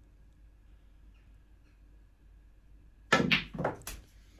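Near-quiet room tone for about three seconds, then a snooker cue striking the cue ball and sharp clicks of snooker balls hitting each other on a small 6x3 table, a last sharp click near the end.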